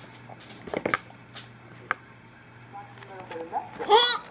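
A baby fussing while being spoon-fed: a few soft clicks, then near the end a short, high-pitched vocal cry that rises and peaks just before it stops. A low steady hum sits underneath and stops shortly before the cry.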